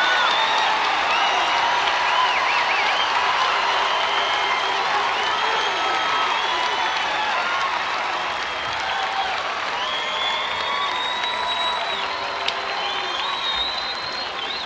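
A large stadium crowd applauding and cheering, with shrill whistles and yells cutting through. The crowd is reacting to the announcement of a drum corps' placing, and the noise eases slightly near the end.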